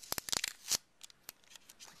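Clear packing tape being peeled back off paper: a quick run of crackling snaps in the first second, then a few scattered ticks.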